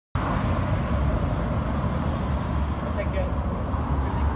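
Steady street traffic noise with a low rumble of vehicles, and faint voices in the background.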